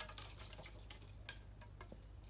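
Faint, scattered light clicks and taps from a carbon surf-casting rod being handled, its sections and line guides knocking lightly, over a faint low hum.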